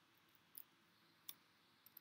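A few faint, separate clicks of computer keyboard keys being pressed while a short word is typed and corrected, over near silence.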